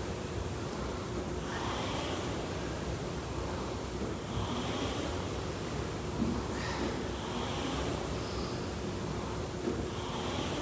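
A steady rushing noise with a faint low hum, such as gym room and ventilation noise picked up by the camera microphone; no clear clank or impact stands out.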